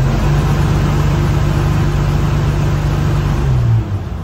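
Dodge M37 truck engine revved and held at a steady high RPM against an MSD rev limiter, running smoothly with no popping or banging, which shows the limiter is working. The revs drop away about three and a half seconds in.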